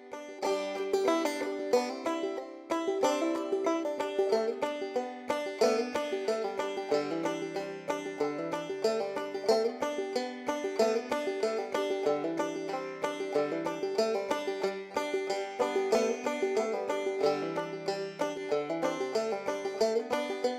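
Background music: a fast-picked banjo tune in a bluegrass style, with rapid plucked notes throughout.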